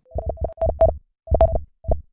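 Synthesized logo sting: short electronic notes on one pitch over bass thumps, played in three quick clusters, with the last cluster ending near the end.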